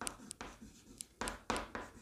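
Chalk writing on a chalkboard: a quick run of short scratching strokes, about three a second, as a word is written out.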